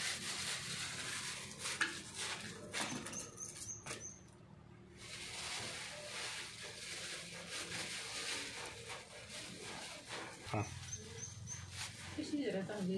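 Soybean seeds being stirred by hand to mix in a liquid bio-culture: a steady dry rustling with a few clicks, pausing briefly around four seconds in. A short run of high chirps sounds twice, early on and near the end.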